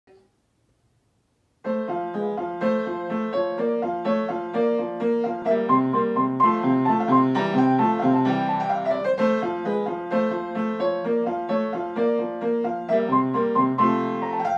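Upright piano playing the rondo movement of a sonatina as a steady run of short, separate notes. It starts about a second and a half in.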